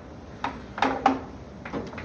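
A few short knocks and shuffles as a person turns and shifts on a wooden organ bench.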